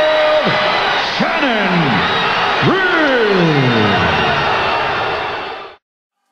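A boxing ring announcer calling out the winner's name in long, drawn-out calls, each sliding down in pitch, over loud arena crowd noise; the sound cuts off abruptly near the end.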